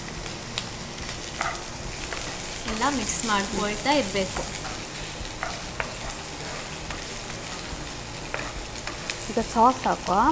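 Chopped onion, green capsicum and garlic sizzling as they fry in a nonstick kadai, stirred with a spatula that ticks against the pan now and then. A short burst of voice about three seconds in.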